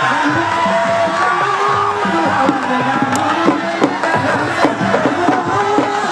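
Crowd shouting, chanting and singing over traditional drumming: the spectators erupting as one wrestler throws the other and wins the bout.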